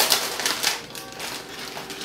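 Plastic cookie package crackling and rustling as its peel-back flap is pulled open and cookies are taken from the plastic tray, a few sharp crackles in the first second, then softer rustling.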